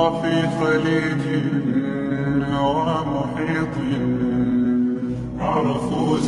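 Slowed, reverb-soaked Arabic nasheed vocals without instruments: long held sung notes with slow melodic turns. A new phrase comes in near the end.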